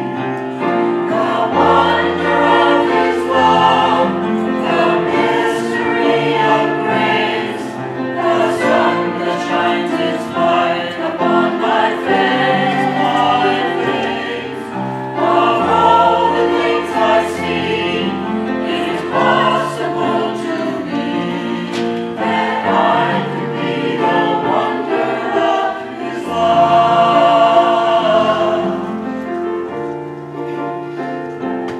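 Mixed-voice church choir singing with accompaniment, in long sustained phrases.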